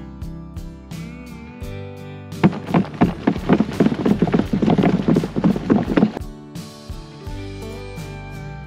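Compost being shaken back and forth on a wooden-framed wire-mesh sifting screen over a wheelbarrow: a dense run of quick rattling scrapes of soil and clumps on the mesh from about two and a half seconds in until about six seconds in. Background music plays throughout.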